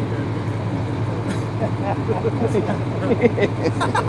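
Men's voices talking and laughing off-mic over a steady low hum of background traffic.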